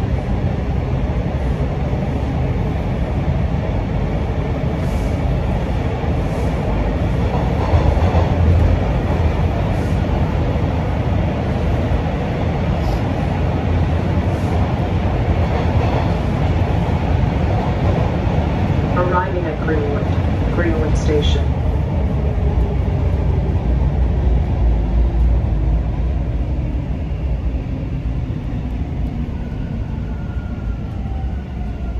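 Bombardier T1 subway train on Toronto's Line 2 heard from inside the car: a steady low rumble as it runs in and slows into a station. About two-thirds of the way through comes a brief cluster of higher tones.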